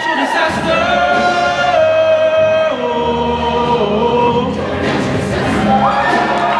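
Large mixed show choir singing held chords that move in steps, with a downward slide in pitch at the start and a rising slide near the end.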